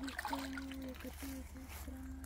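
Water splashing and sloshing at the rim of a landing net as a small carp is drawn in at the pond's edge, with a person's voice in short held tones underneath.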